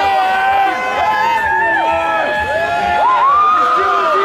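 A street crowd of celebrating football fans shouting and cheering, many voices at once. One voice rises into a long, high yell about three seconds in.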